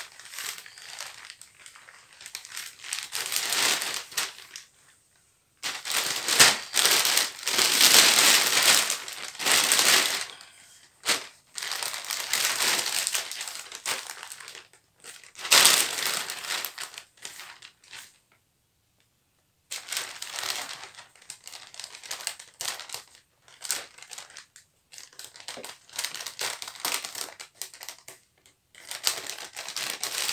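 Clear plastic packaging sheet crinkling as hands smooth it and fold it around a bundle of clothes, in irregular bursts with pauses between. The sound cuts out completely twice, about five seconds in and again around eighteen seconds.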